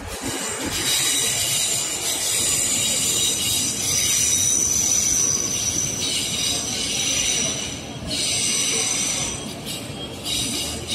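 Metro train wheels squealing as a Tokyo Metro Marunouchi Line train rounds the curve onto the river bridge: several high steady squealing tones over the rumble of the train running, shifting in pitch about six and eight seconds in.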